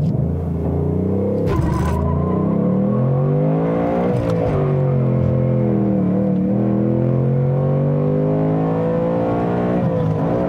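2019 Ford Mustang Bullitt's naturally aspirated 5.0-litre V8 heard from inside the cabin under throttle. The engine note climbs, drops back sharply about a second and a half in and again about four seconds in, then holds steadier at a high rev.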